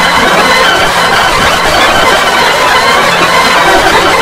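Loud, dense, unbroken wall of effects-processed audio: layered music and other sound mashed together by video-effects filters into a distorted cacophony.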